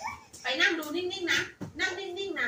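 Drawn-out, whining vocal sounds held at a steady pitch, twice, the second starting just before the end.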